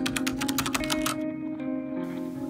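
Keyboard-typing sound effect, a quick run of clicks that stops a little over a second in, over soft background music with held notes.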